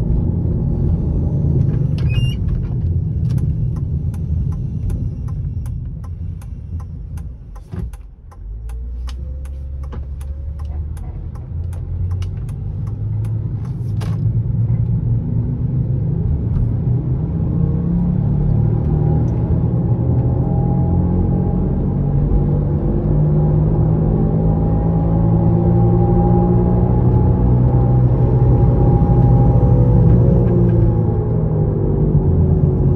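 Inside the cabin of a 2007 Ford Edge, its 3.5-litre V6 runs with steady tyre and road noise. A regular ticking, about twice a second, comes through the first half. In the second half the engine note rises as the car accelerates.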